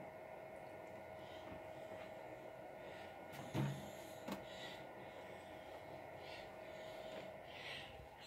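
Quiet room tone: a faint steady hum with a thin held tone, broken by a brief soft sound about three and a half seconds in and a small click just after.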